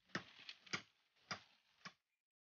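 Bamboo stalk being chopped with a blade: five faint, sharp knocks in two seconds, unevenly spaced.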